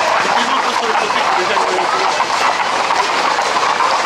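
Many horses' hooves clattering on the paved street as a tight pack of Camargue horses moves along, mixed with crowd voices.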